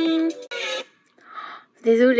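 A female-sung pop song stops abruptly a moment in. A woman's breathy exhale follows, then a short voiced sound as she begins to react.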